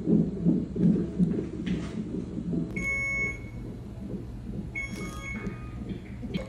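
Fetal heart monitor's Doppler playing a baby's heartbeat as a fast pulse, a little over two beats a second, fading after the first few seconds. Two short high electronic beeps from the bedside monitoring equipment sound about three and five seconds in.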